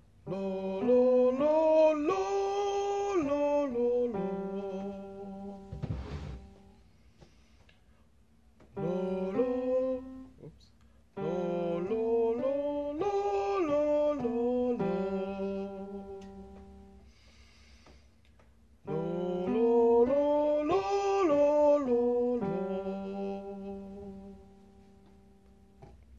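A man sings a vocal scale exercise, stepping up in pitch and back down, while playing the same notes on an electric keyboard. There are four phrases, each ending on a held note. There is a short noise about six seconds in.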